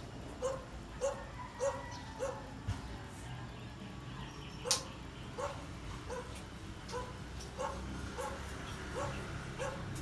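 A dog barking repeatedly, short barks coming about one and a half times a second with a brief pause midway. A single sharp click cuts in about halfway through.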